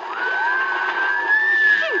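Whistled sound effect of a howling winter wind on an early acoustic comedy record: two long whistling tones, one rising and holding, both sliding down near the end, over steady record-surface hiss.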